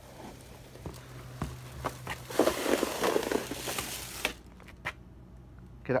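Plastic shopping bag full of items being dragged across the floor, rustling and scraping; the noise is loudest for about two seconds in the middle, then stops abruptly. A few light knocks and footsteps come before and after it.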